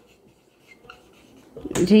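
Marker pen writing on a whiteboard: a few faint, short strokes. A woman starts speaking near the end.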